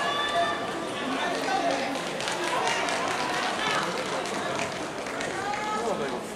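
Many voices overlapping in a large sports hall, several people calling out at once over general chatter.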